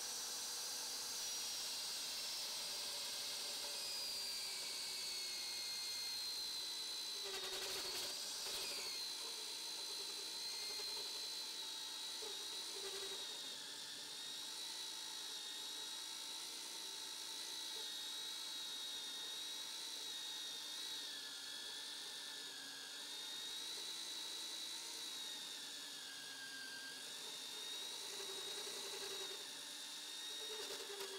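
VEVOR MD40 magnetic drill's 1100 W motor running with a steady high whine as a 27 mm annular cutter cuts through steel plate with little effort. The whine sinks slightly in pitch over the first few seconds, and there is a brief knock about eight seconds in.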